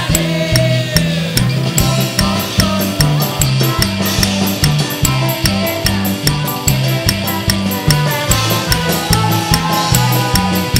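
Live band playing an upbeat worship song: electric bass line, drum kit keeping a steady fast beat with cymbals, and keyboard.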